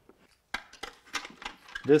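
A quick series of light clicks and clinks of small hard plastic and metal parts being handled, starting about half a second in, as the drone's external GPS antenna is taken out and brought to the dome cover. A man's voice begins right at the end.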